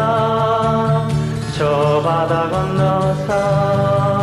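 A 1970s Korean pop song: a sung melodic line of long held notes, sliding to new pitches twice, over a steady low rhythmic accompaniment.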